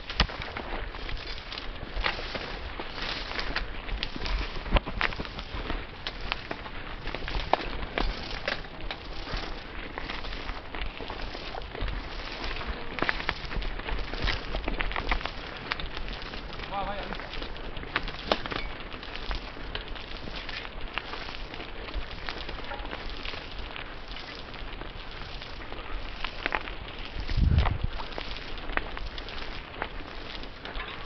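Mountain bike rolling over a rough, stony dirt trail through scrub: a constant clatter of many small clicks and rattles from tyres on loose stones and twigs and the shaking bike, with one heavy thump near the end.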